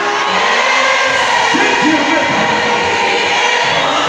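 Live gospel praise music with voices singing over held instrumental notes, and a crowd joining in.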